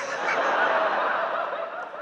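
A large audience laughing together, fading a little near the end.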